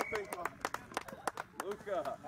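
Voices of rugby players calling on the pitch, with a run of sharp, irregular claps.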